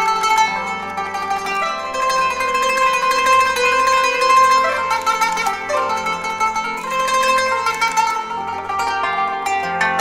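Qanun playing a Tunisian medley in quick runs of plucked notes, with a low pulsing accompaniment underneath.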